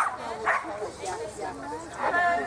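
A small dog barking: sharp barks at the start and again about half a second in, over people talking.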